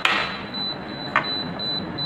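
Propex Pixi electronic apex locator sounding a high-pitched beep almost without pause, broken only by brief gaps, as the endodontic file is pushed down the root canal. The near-continuous signal marks the file closing in on the apex, approaching the 0.5 reading at the apical constriction.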